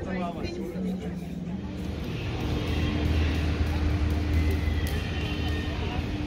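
Voices talking briefly, then background music with a steady low hum that comes in about two seconds in.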